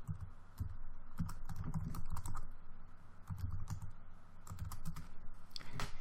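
Typing on a computer keyboard: an irregular run of keystrokes entering a short command.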